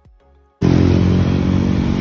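Quiet plucked music, then about half a second in a sudden cut to loud, steady vehicle engine and road noise from a moving vehicle.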